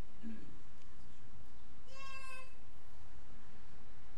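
A young child's short, high-pitched cry about two seconds in, lasting about half a second, over a steady background hiss.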